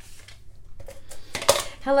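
Quiet rustle of hands and paper on a wooden tabletop, then one sharp click about a second and a half in as a plastic adhesive applicator is handled.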